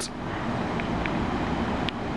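Large LG split-system outdoor unit with two fans running: a steady, even noise, with a few faint ticks over it.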